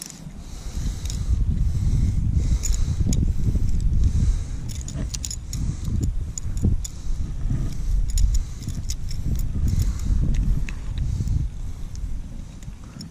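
Small metal clinks and jingles of a buzzbait's blade and hook being handled while it is worked free from a largemouth bass's mouth, over a heavy low rumble on the microphone.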